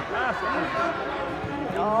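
Several voices calling out and chattering across a football pitch, overlapping, with a louder exclamation of "oh" near the end.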